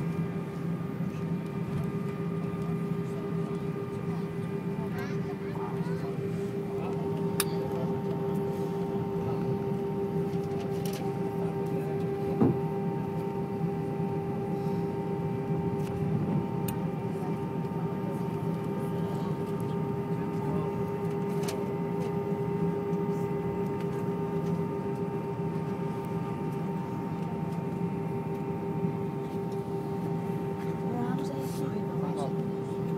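Airbus airliner's jet engines at taxi idle, heard inside the passenger cabin: a steady hum with a steady whine, unchanging in pitch, with a few light clicks now and then.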